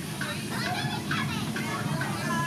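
Several children's voices chattering and calling out at once, with no clear words, over a low steady rumble.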